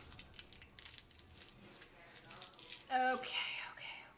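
A run of faint crackling clicks, then about three seconds in a short voiced groan from a woman whose face is stinging under a glycolic acid peel.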